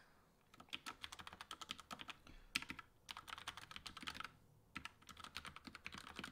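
Faint typing on a computer keyboard: runs of rapid key clicks broken by a few short pauses.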